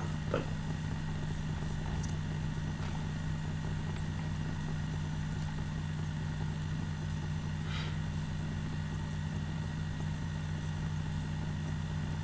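A steady low hum, with a few faint clicks.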